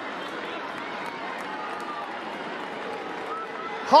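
Pitch-side ambience at a football match: a steady, even background noise with faint, distant shouting voices.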